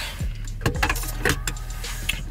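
A few light clicks and clinks of a fork and food container being handled in a car cabin, over a steady low hum.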